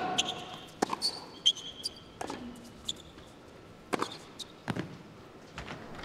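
Tennis rally on an indoor hard court: several sharp racket strikes on the ball, roughly a second or more apart, with short high shoe squeaks in the first couple of seconds.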